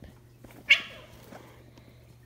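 Domestic cat giving one short, sharp cry a little under a second in while two cats scuffle. Faint small taps follow.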